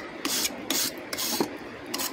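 Stiff-bristled hand brush scrubbing sand off a freshly cast aluminium part, in a few short rasping strokes.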